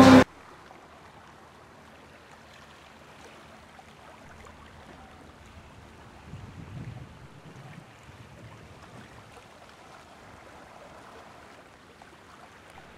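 Faint, steady sound of calm sea water gently lapping among granite rocks along the shore, with a brief low rumble about six seconds in.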